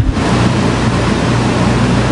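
Steady loud hiss with a low hum underneath, and nothing else: the background noise of the sound system or recording.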